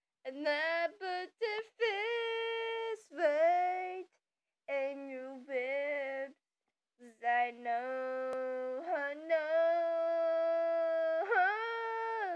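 A high voice singing long held notes with no clear words, each note sliding up or down into pitch, in phrases broken by short silent pauses.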